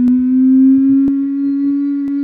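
A man's long drawn-out hesitation hum ("ummm") on one steady pitch that drifts slowly upward. A few faint clicks sound behind it.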